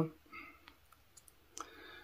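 A quiet pause in a man's speech, with the tail of a word at the very start, then a few faint mouth clicks and a soft breath near the end.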